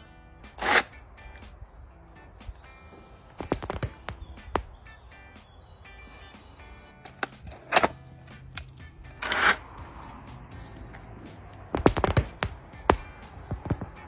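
Hard plastic clicks and knocks of a multi-level back stretcher being handled and adjusted between its height settings, in scattered single and clustered strokes over faint background music.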